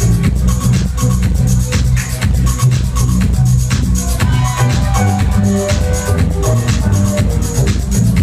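Progressive house music played loud over a nightclub sound system, with a steady driving beat, heavy bassline and bright percussion running without a break.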